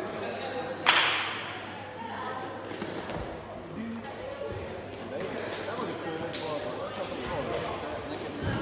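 Background chatter of voices echoing in a large sports hall, with one loud, sharp smack about a second in that rings briefly in the hall.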